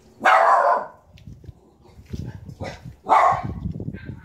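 A dog barking twice, two loud single barks about three seconds apart.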